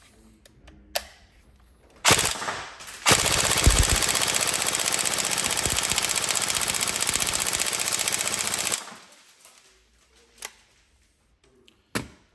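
Tokyo Marui AK Storm NGRS (next-generation recoil shock) airsoft electric rifle, fitted with a Jefftron Leviathan trigger unit, test-firing. It fires a short burst about two seconds in, then a long, steady full-auto burst of nearly six seconds that stops suddenly near nine seconds in.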